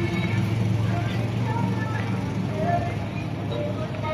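A vehicle engine running steadily with a low hum that fades about three seconds in, under outdoor voices and faint music.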